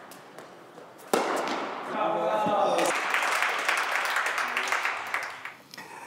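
Spectators at an indoor tennis match applauding and cheering. The applause breaks out suddenly about a second in, after a few faint racket strikes, with a voice calling out shortly after. It dies away near the end.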